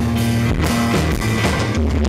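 Live band playing an instrumental stretch between sung lines of a pop-rock song: amplified guitar, bass and drum kit with a steady beat.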